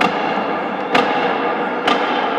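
Boxing ring bell struck three times, about a second apart, ringing on between strokes: the signal that the break is over and a round is starting.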